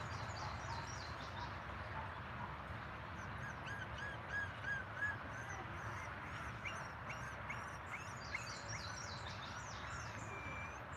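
Birds chirping over a steady low outdoor hum. Quick runs of high, repeated chirps come through the middle and later part, and a short series of about six lower, evenly spaced notes comes around four to five seconds in.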